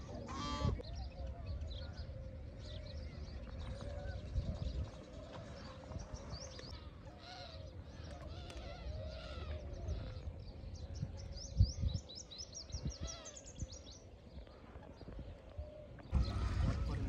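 Many birds chirping and calling, with a quick run of short rising chirps in the later part, over a low rumble. A single thump sounds about three-quarters of the way through.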